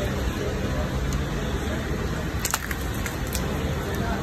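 Steady low background rumble, with a few brief sharp clicks about two and a half seconds in and once more shortly after.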